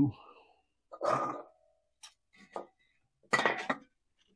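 Aluminium beer cans knocking and clinking as they are handled and set down on a wooden bar top: a clunk with a short ring about a second in, and another clatter of cans near the end.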